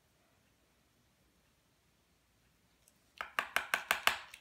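Near silence, then about three seconds in a quick run of about eight sharp clicks in under a second from a retractable pen being worked to free its stuck spring.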